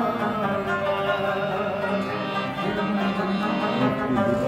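Live Pashto folk music, with a plucked rabab carrying the melody over hand-drum accompaniment, playing continuously.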